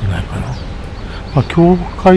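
A man's short wordless hum, gliding up about one and a half seconds in and then held briefly, over a steady low rumble.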